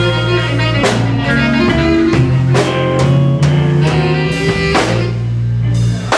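Live blues band playing an instrumental passage: hollow-body electric guitar, electric bass holding long low notes, and a drum kit keeping a steady beat.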